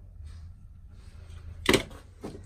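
A single short, sharp knock about three-quarters of the way through, over a low steady hum.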